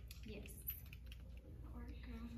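Faint, quick, irregular clicks and taps from a clear plastic clipboard being waved back and forth to fan wet paint dry on a wooden board.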